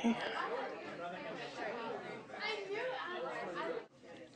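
Indistinct background chatter of several voices in a classroom.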